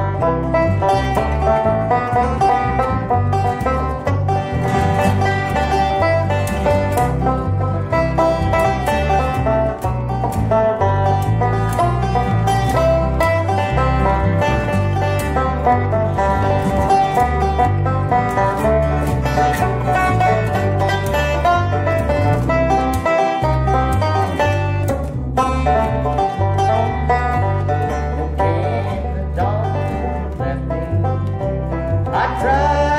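Bluegrass instrumental break played on banjo and acoustic guitars, with a steady plucked bass line underneath. The bass briefly drops out a little past the middle.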